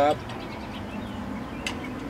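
Outdoor background noise with wind rumbling on the microphone and a car passing on the street. There is a light tap of cutlery on a plate near the end.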